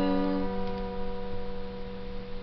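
Acoustic guitar's last strummed chord ringing out and slowly fading, the higher notes dying away about half a second in while a few lower notes sustain.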